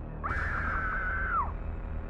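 A high-pitched scream-like shriek, held for about a second and falling away at the end, over a low droning music bed.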